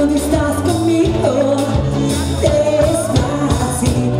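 A live band playing with a woman singing lead over drum kit, electric guitar and keyboard, amplified through PA speakers; she holds a long note in the second half.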